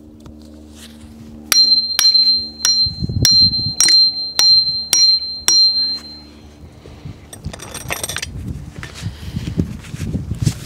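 A steel tree step is hammered into a maple trunk with the poll of a hatchet: about nine sharp metal-on-metal strikes, roughly two a second, each ringing with a high clear tone. A short scraping rustle follows near the end.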